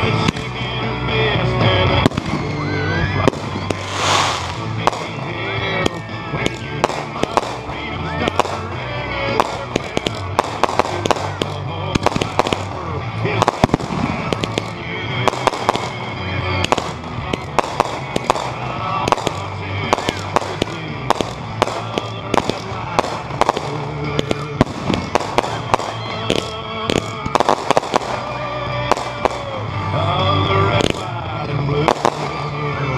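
Aerial fireworks going off: a run of sharp bangs and crackles, coming thicker in the second half. A song with singing plays alongside.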